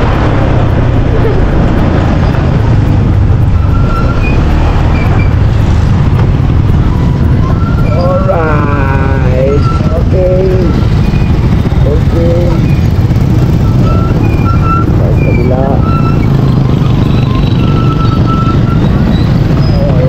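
Steady low rumble of wind on the camera microphone and the motorcycle's engine during a slow ride through street traffic. Voices rise over it about eight to ten seconds in and again briefly later.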